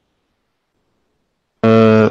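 Dead silence for about a second and a half, then a man's voice starts abruptly, holding one steady vowel at a flat pitch for about half a second.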